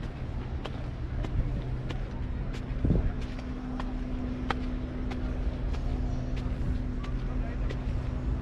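Walking footsteps on stone steps and paving, an even sharp tread about one and a half steps a second, over steady outdoor rumble. A steady low hum joins about two seconds in.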